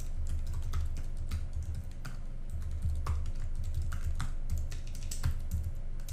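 Typing on a computer keyboard: irregular, quick keystrokes, several a second, over a low steady hum.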